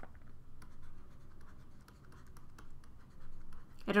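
Stylus writing on a tablet screen: a run of faint light taps and scratches as words are handwritten.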